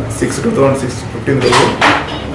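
Speech: a man talking steadily in a short statement.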